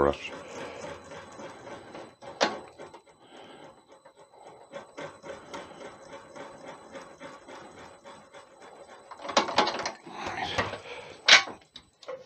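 Wood lathe turning slowly, about 220 rpm, as a tailstock-mounted drill bit bores into a spinning red deer antler blank: a steady faint motor hum under dense, fast scratchy ticking of the bit cutting. Louder, rougher bursts of cutting come near the end.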